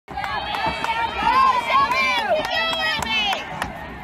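Spectators cheering and shouting in high, excited voices, several at once, dying down about three and a half seconds in. Under the voices there are short sharp taps at about three a second.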